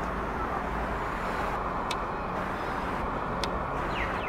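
Steady hum of distant road traffic. Two brief high ticks come about two and three and a half seconds in, and a short falling chirp starts at the very end.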